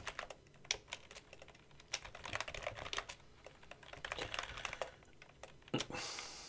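Typing on a computer keyboard: a faint, irregular run of keystrokes, with one louder key strike near the end.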